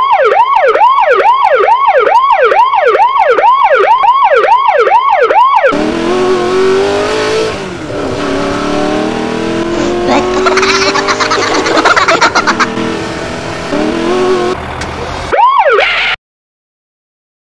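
Police car siren sound effect rising and falling quickly, about two cycles a second, for the first six seconds. It gives way to vehicle engine noise with a burst of rapid clattering about ten to twelve seconds in. The siren comes back briefly at the very end.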